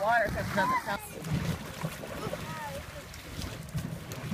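Wind buffeting the microphone and choppy water sloshing around a boat's stern. High voices call out during the first second and once more briefly in the middle.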